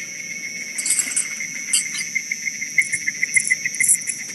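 Insects chirping: a high steady trill with a quicker, pulsing chirp beneath it.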